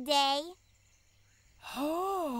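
Cartoon voice dialogue: a spoken word ends, then after a second of near silence comes one long sigh-like vocal sound whose pitch rises and then falls.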